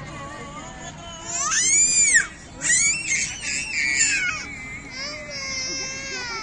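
A young child crying out in a very high-pitched voice: a long rising-and-falling wail about a second and a half in, then a loud run of broken cries, then a weaker falling wail near the end.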